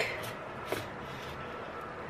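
Faint taps and scrapes of a metal spoon pressed against the seam of a cardboard refrigerated-dough tube that is stuck and has not yet popped open, with two small clicks about a quarter and three quarters of a second in.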